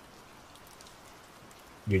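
Steady rain ambience, a soft even hiss with faint scattered drop ticks. A man's voice begins a word right at the end.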